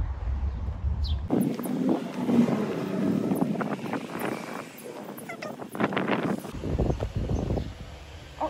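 Wind buffeting the microphone, with a short high bird chirp about a second in. Then the wind drops away and a busier clatter of knocks and scuffs follows, which is louder.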